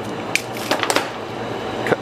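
Scissor-style pipe cutter snapping through wrapped hard candies: a few sharp cracks about a third of a second in and again just before the one-second mark, over a steady low background hum.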